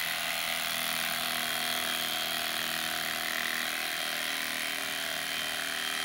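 Electric carving knife running steadily, its reciprocating blades sawing through the layered foam of a seven-inch mattress, cutting really well.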